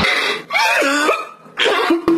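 A man's voice crying and sobbing, with a wavering, gliding wail in the middle between short noisy gasps.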